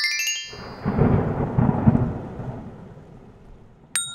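Thunder sound effect: a deep rumble that builds about half a second in, is strongest around one to two seconds, and dies away. A chime fades out at the start, and a sharp click with a bell-like ring comes right at the end.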